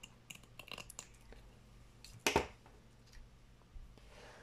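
Scissors snipping through a strip of craft mesh in a few quick small clicks, then a single louder knock about two seconds in.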